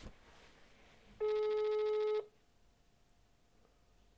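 Telephone ringback tone heard down the line: one steady beep of about a second, starting about a second in, as the called phone rings at the other end before it is answered.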